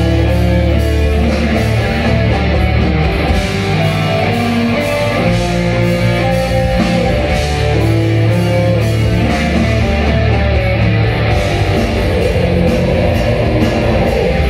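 Live heavy metal band playing: distorted electric guitars, bass and drums in a slow riff of long held chords, heard loud through the PA.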